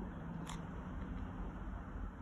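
Low rumble of handling noise, with one short click about half a second in.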